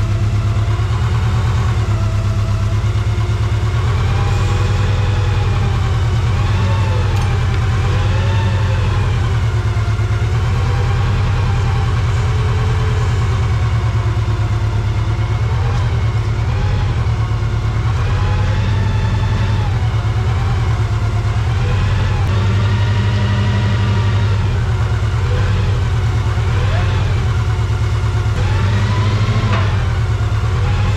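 Cat T500 forklift's propane engine idling steadily, a constant low hum, while it holds a tractor track.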